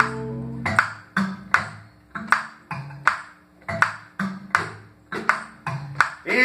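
Live band music: a held keyboard organ chord ends about 0.7 s in. After that comes a sparse, halting groove of sharp ringing percussion strikes about two or three a second, over short plucked upright bass notes that move between pitches.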